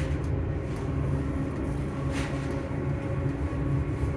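Hitachi Class 385 electric multiple unit running, heard from inside the vestibule: a steady low rumble with a steady hum of tones from the traction motors. There is a brief click about two seconds in.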